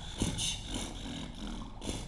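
A man beatboxing: a few sharp, puffing mouth-percussion beats, close together in the first second and one more near the end. It is a clumsy attempt at a beat, "almost" but not quite right.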